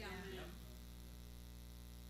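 Faint, steady electrical mains hum with evenly spaced tones, after a brief faint "yeah" at the very start.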